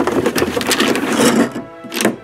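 A loud, rapid mechanical rattle lasting about a second and a half, starting and stopping abruptly, over background music.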